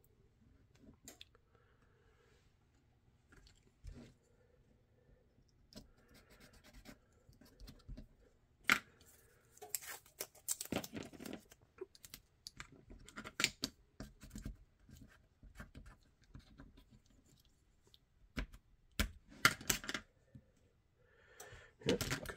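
Blue painter's tape being torn and pressed down by hand onto a holster mold: scattered taps, scratches and short tearing sounds, sparse at first and busier and louder from about eight seconds in.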